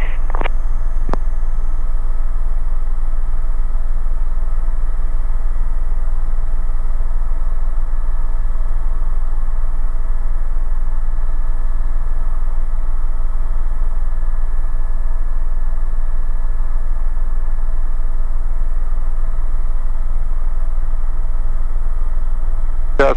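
Cabin noise of an Airbus EC130 helicopter in flight: a steady deep rotor drone with several steady whining tones from the Safran Arriel turboshaft and gearbox, unchanging throughout.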